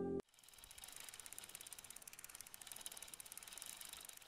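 The last chord of background music cuts off abruptly just after the start. A faint, steady, rapid mechanical ticking with hiss follows.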